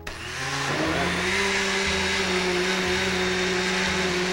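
Countertop blender motor switching on and running, its pitch rising over the first second or so as it comes up to speed, then holding steady while it blends a milky drink mix.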